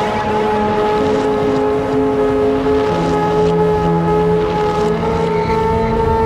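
Electronic dance music in a beatless breakdown: sustained synth chords over a steady hiss, with no kick drum. The chord changes every two seconds or so.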